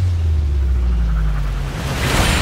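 Deep, steady low rumble of trailer sound design that settles lower in pitch at the start and eases off slightly near the end.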